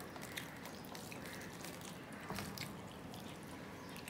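Fingers mixing rice and mashed potato and bean bhorta on a steel plate: soft, wet squishing and small clicks, with a somewhat louder one a little over two seconds in.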